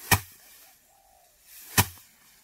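A sheaf of rice stalks struck against a wooden threshing frame twice, about 1.7 seconds apart: the traditional hand-threshing beat that knocks the grain off the stalks. Each sharp strike is preceded by a brief swish of the swing.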